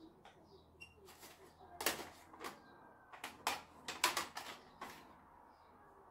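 Plastic audio cassette cases clacking against each other as they are handled and taken out of a cabinet, a run of sharp clicks lasting a few seconds. Faint bird chirps at the start.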